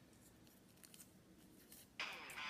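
Faint crinkling of a folded paper slip being unfolded by hand: a few soft crackles in near silence.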